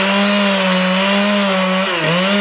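Two-stroke chainsaw running steadily at high revs while cutting felled pine; its pitch dips briefly near the end, then picks up again.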